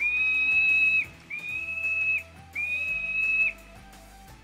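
Three long, steady, high-pitched whistled tones, each lasting about a second with short gaps between them, over soft background music.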